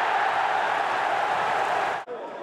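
Steady noise of a large football stadium crowd, cut off abruptly at the end.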